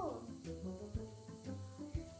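Pop song with a steady beat, heard faintly as it leaks from a pair of over-ear headphones playing loud music.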